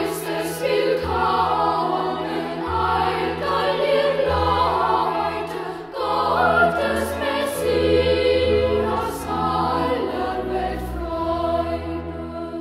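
Boys' choir singing a German Christmas carol in several parts, with an instrumental ensemble holding low bass notes beneath the voices.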